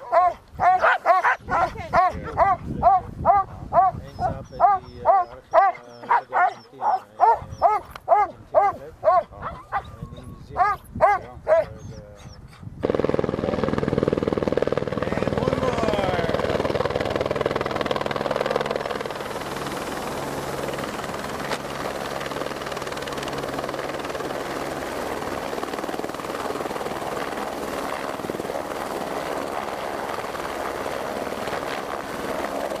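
Sled dogs barking and yelping over and over, about two barks a second. About 13 seconds in, this cuts suddenly to a helicopter running close by and hovering low over the snow, a dense steady rotor and engine noise that eases somewhat about six seconds later.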